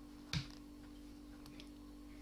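A single sharp click about a third of a second in, from the Tunisian crochet hook as stitches are picked up, with a couple of fainter ticks later, over a steady low hum.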